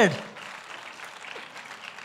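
Light audience applause, an even patter of many hands, after a voice trails off at the very start.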